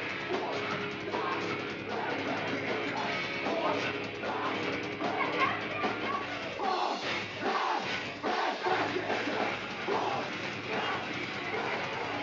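Live heavy metal band playing loud, with distorted guitars, bass, drums and shouted vocals. The low end cuts out briefly a few times just past the middle, as in a stop-start riff.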